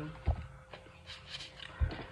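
Tarot cards being shuffled and handled in the hands: a soft rustle with two dull thumps, one shortly after the start and one near the end.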